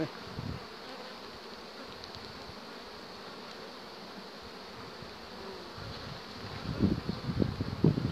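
Honeybees buzzing steadily around an opened hive, the frames crowded with bees. Near the end, louder irregular low thumps and rustling close to the microphone.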